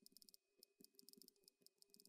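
Faint, quick clicks of a tablet's on-screen keyboard as a message is typed, several a second with a brief pause early in the run, over a faint steady hum.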